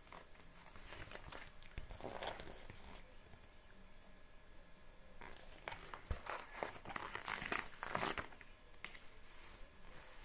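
Faint rustling and crinkling of a paperback picture book's pages as they are handled and turned, in three short spells.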